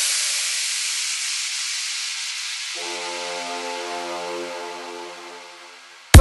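Electronic dance music breakdown. A long hissing noise wash slowly fades away, and about three seconds in a sustained synth chord comes in underneath, held quietly to the end.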